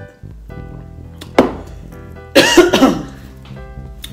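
A woman coughing over background music: one short, sharp cough about a second and a half in, then a louder, longer cough a second later.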